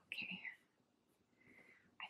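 A woman's short, soft whisper just after the start, and a fainter one near the end, with near silence between.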